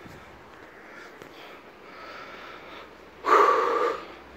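A walker's loud, heavy breath out, a single puff lasting under a second near the end, over a faint quiet background.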